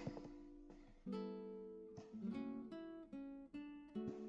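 Faint background music: acoustic guitar picking a run of single plucked notes that starts about a second in.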